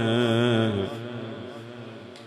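A man's voice chanting a mourning recitation: one long held note with a wavering pitch that breaks off about a second in, then its echo fades away.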